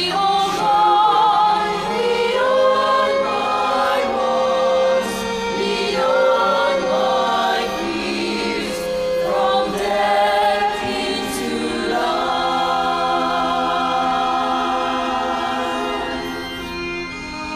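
Mixed choir of men's and women's voices singing a hymn in harmony, with sustained, shifting chords throughout.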